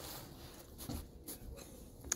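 Faint rustling with a few soft clicks scattered through it, over a low, quiet background.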